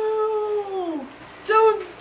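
A long, high wailing cry that holds one pitch and then falls away at its end, followed by a second, shorter cry about one and a half seconds in.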